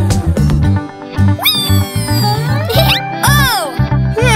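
Cartoon background music with a pulsing bass line. From about a second and a half in, high-pitched gliding cartoon vocal sounds rise and fall over the music.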